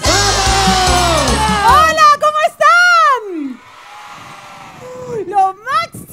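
An upbeat pop dance song ends about two seconds in. A performer then lets out a long, loud shout that rises and falls in pitch. Faint crowd noise follows, and a voice starts speaking near the end.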